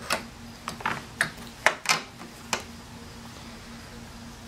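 Light clicks and knocks of a lawnmower's throttle cable and its plastic control lever being handled and set down, about seven sharp clicks in the first two and a half seconds, then only a faint steady hum.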